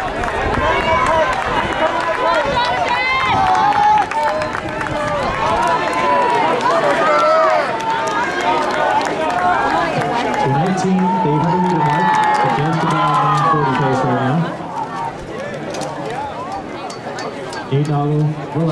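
Track-meet spectators shouting and talking, many voices overlapping. A man's deeper voice is close by from about ten seconds in to about fourteen.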